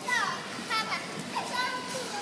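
Children's high-pitched shouts and squeals over a background of children playing, with several short calls sliding up and down in pitch.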